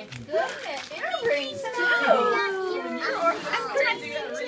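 Several adults and young children talking and exclaiming over each other with no clear words; around the middle one voice holds a long, slowly falling note.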